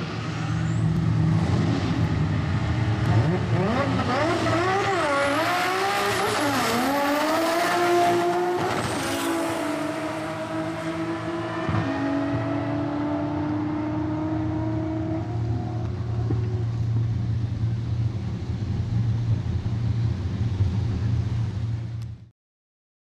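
Nissan Skyline drag car launching side by side with another car and accelerating down the strip, its engine pitch climbing through the gears with a drop at each shift. About halfway through the engine note settles into a steady drone that fades away as the cars get further off, leaving a steady low hum.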